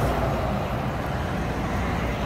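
Road traffic going by: a steady low rumble.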